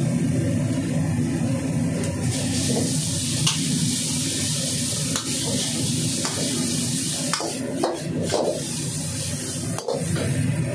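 Noodles and shredded cabbage sizzling in a hot iron wok while a metal ladle stirs and scrapes them, with several short scrapes and knocks of the ladle against the wok, most of them close together near the end.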